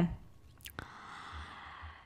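A soft breath drawn in close to the microphone in a pause between sentences of speech, a faint hiss lasting about a second. It is preceded by a couple of small clicks.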